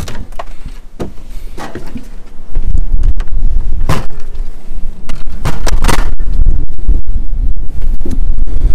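Wind buffeting the microphone, a loud low rumble that sets in about two and a half seconds in and carries on, with knocks and clicks of the camera and hands against the boat's doors and hatch. Before the wind sets in, quieter rustling and bumps of movement.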